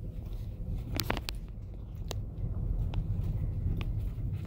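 Low, steady rumble of a car moving slowly, heard from inside the cabin, with a few short clicks around a second in and again near the end.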